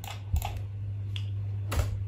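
A few scattered clicks of a computer keyboard, the loudest near the end, over a steady low hum.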